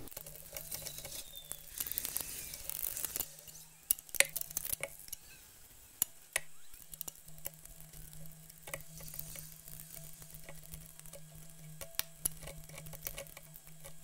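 Faint, scattered metal clicks and light scraping as hands and tools work the blade in the cutterhead of a Ryobi AP1301 thickness planer during a blade change. A low steady hum runs underneath.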